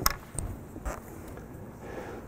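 A short pause in a lecture: faint steady room hiss with a sharp click at the start and two softer clicks about half a second and a second in.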